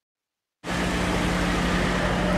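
Silence for about the first half second, then a car driving along a street: the engine running with steady road noise.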